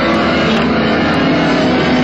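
Live band playing loud, with an electric guitar being played to the fore; the sound is dense and continuous.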